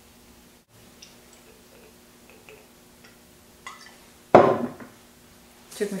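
Faint clicks and scrapes of a small kitchen knife shaving thin slices off a block of Parmesan, then one loud, sharp knock a little past four seconds in, as of something set down on the wooden table or cutting board.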